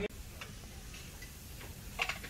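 A few faint, scattered clicks of metal carving utensils, with a sharper click at the very end, over low room noise.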